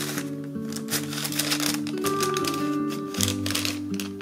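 Gentle acoustic guitar music, with quick rustling and crackling of paper and a cellophane bag as a card is slid into a paper bag.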